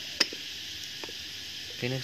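A sharp clink of a porcelain plate against a bowl about a quarter second in and a fainter one about a second in, over a steady hiss of boiling water.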